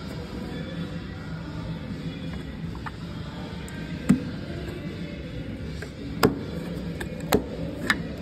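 A steady background hum, tagged as music, with four sharp clicks and taps from the plastic and metal parts of a truck's DEF tank header unit being handled. The loudest clicks come about four and six seconds in.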